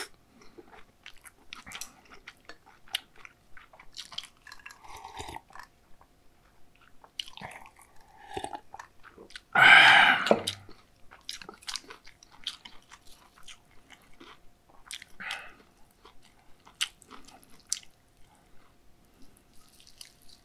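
Close-miked wet chewing of a mouthful of spicy bibim noodles and raw beef, with many small crisp mouth clicks. About halfway through comes one much louder breathy mouth sound lasting about a second.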